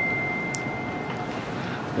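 A single clear, high ringing tone, struck just before and fading out over about the first second and a half, over a steady background hiss. A faint tick about half a second in.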